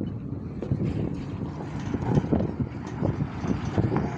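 Heavy diesel engines of a tractor and a tipper truck running, an uneven low rumble, with wind buffeting the microphone.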